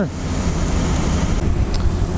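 Steady low rumble of the running machinery that pressurises the field sprayer, with wind buffeting the microphone.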